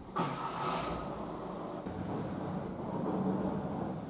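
A car running on the street out of view, its engine and tyres making a steady hum that sets in suddenly just after the start.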